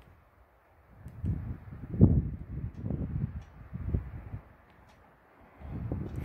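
Low, irregular rumbling on a phone microphone with a few faint ticks, starting about a second in and dying away before the end.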